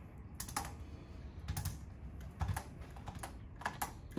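Handheld chiropractic adjusting instrument tapping against the upper back and neck in short clusters of rapid clicks, four bursts a second or so apart.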